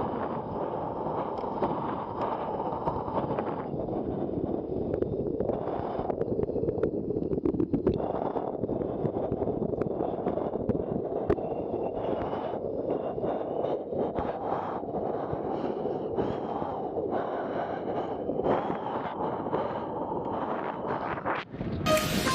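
Wind rushing over a bike-mounted action camera's microphone, mixed with the hum of road-bike tyres on a rough paved lane. Scattered short knocks come from bumps in the surface.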